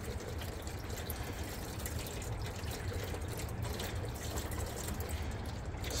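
Evans coolant trickling steadily out of a loosened hose at the water pump and into buckets below.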